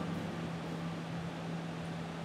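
Steady low hum with an even hiss: the room tone of a bar, with no distinct events.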